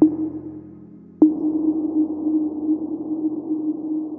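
Outro sound effect: a low steady drone tone with a sharp hit at the start and a second hit about a second in, after which a hiss runs under the tone.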